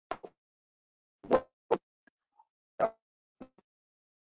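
Short, isolated pops and clipped scraps of sound, about six in four seconds, with dead digital silence between them. This is typical of a video-call audio stream that is breaking up or heavily noise-gated, letting only fragments of the presenter's audio through.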